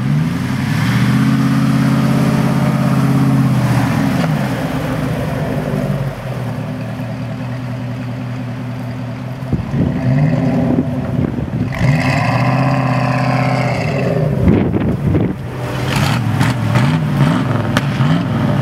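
Lifted Dodge Durango's V8 engine revving up and down repeatedly, held high for a few seconds at a time, then several quick throttle blips near the end.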